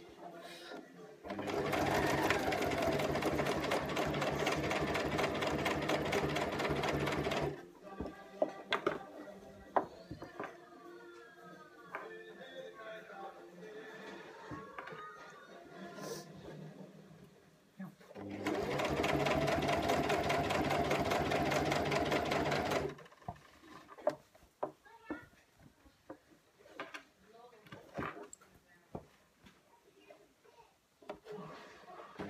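Electric sewing machine stitching a hem in two runs: the motor hums with a rapid, even needle clatter for about six seconds, stops, then runs again for about five seconds.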